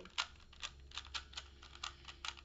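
Original Rubik's brand 3x3 cube being turned by hand: its plastic layers click and clack about ten times, irregularly. The cube has just been given six drops of lubricant.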